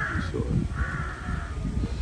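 Crows cawing: a harsh call right at the start and a longer one about a second in.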